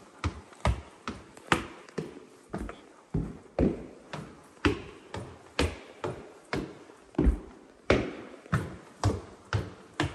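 Footsteps climbing a hardwood staircase: a steady run of sharp taps, about two steps a second.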